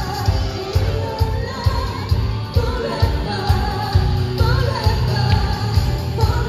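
Live Christian worship band playing through a loud PA: a drum kit keeping a steady heavy beat under electric guitars, with the vocalists singing the melody.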